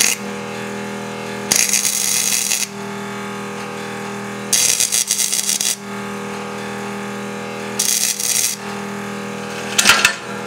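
Stick (arc) welder crackling and sputtering in three bursts of about a second each, tack-welding a steel rod onto a steel socket. A steady electrical hum runs underneath, and a couple of sharp clicks come near the end.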